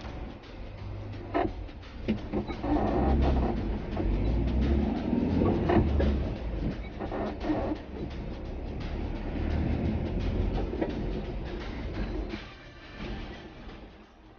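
A car driving slowly in city traffic: a low rumble of engine and road with frequent small rattles and knocks, easing off near the end.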